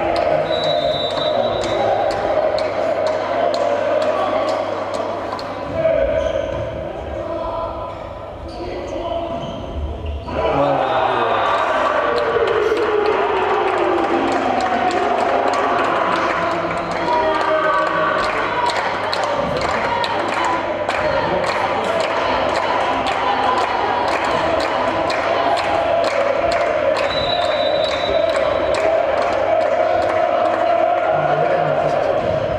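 Indoor volleyball game sound in a sports hall: a steady bed of crowd and player voices with many sharp knocks of the ball being hit and bounced on the court. A short high referee's whistle sounds near the start and again a few seconds before the end. The noise drops for a few seconds, then jumps back up sharply about ten seconds in.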